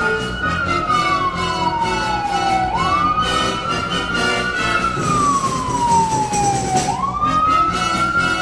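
Emergency vehicle siren wailing, each cycle climbing quickly and falling slowly, about four seconds apiece, over background music. A rushing hiss comes in about five seconds in and cuts off as the siren climbs again.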